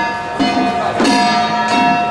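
Small brass hand gongs struck in a steady beat, about one and a half strikes a second, their metallic ringing sustaining between strikes.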